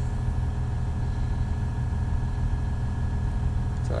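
Caterpillar 980M wheel loader's diesel engine idling steadily, heard from inside the cab: a constant low hum with a few steady higher tones over it.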